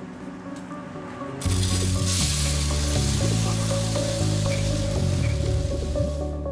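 Programme music: a quieter bed, then about a second and a half in a louder passage of low bass notes that step in pitch every second or so, under a loud steady hiss that fades toward the end.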